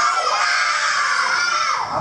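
A group of children shouting an answer together in one long, drawn-out call.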